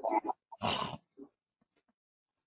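A man's brief non-word vocal sounds close to the microphone: a short murmured syllable, then a breathy, noisy burst under half a second long, about half a second in.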